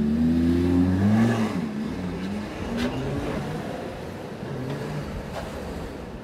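Lamborghini engine revving as the car pulls away. The note climbs and is loudest about a second in, then runs on at a lower, wavering pitch.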